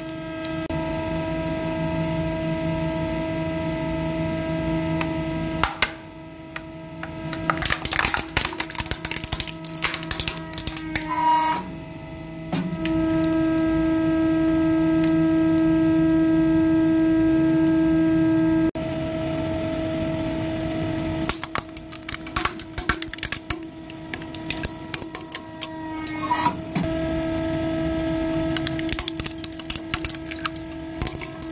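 Hydraulic press running with a steady pump hum while plastic toys are crushed under its platen. The plastic cracks and snaps in two long spells of crackling, one in the first half and one in the last third, and the hum grows louder for several seconds in the middle.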